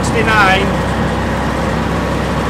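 Engine drone inside the cabin of a 1969 Land Rover, steady and quite noisy.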